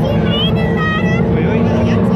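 Autocross cars' engines running out on the track, under spectator voices, with one high-pitched held call, a shout or whistle, from about a quarter second to just past one second in.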